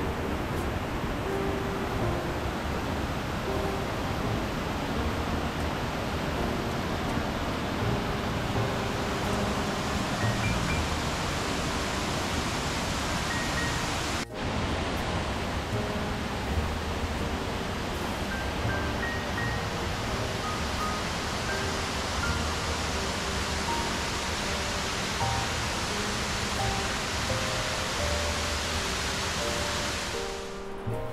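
Steady rush of Piney Creek pouring over a rock ledge at the lip of a waterfall, with background music of scattered melodic notes laid over it. The sound drops out for a moment about halfway through.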